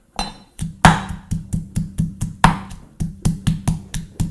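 Rapid, even knocking of a knife chopping on a cutting board, about four to five strokes a second, with two heavier strikes among them, over a low steady hum.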